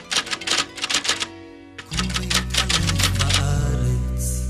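Typewriter key clicks used as a sound effect, in two quick runs separated by a brief pause. Music with a heavy bass line comes in with the second run, about halfway through.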